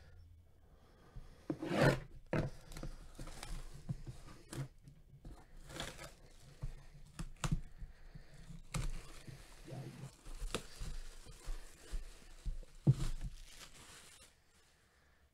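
Plastic and holographic foil packaging on a sports memorabilia box being torn and crinkled by hand, in irregular rips and crackles with a few sharp clicks, loudest about two seconds in and near the end.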